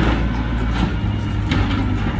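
Diesel engines of a wheel loader and a garbage truck running steadily with a low rumble. Short sharp scrapes or knocks come at the start and about a second and a half in.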